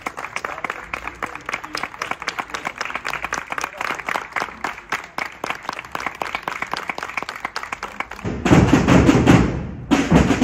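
A small crowd clapping for about eight seconds. Near the end, loud rope-tensioned marching drums start beating.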